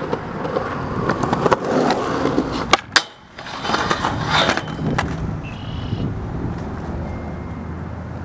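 Skateboard wheels rolling over concrete, then two sharp cracks of the pop just before three seconds in and a short quiet gap while the board is in the air. The board then scrapes along a steel flat rail for about a second, lands, and rolls away, fading.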